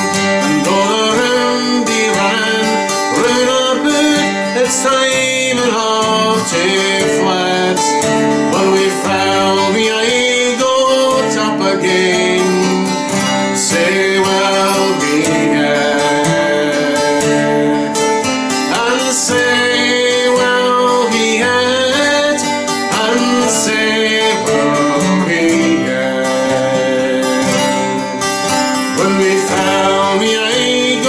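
A man singing a folk song, accompanying himself on an acoustic guitar with steady chords.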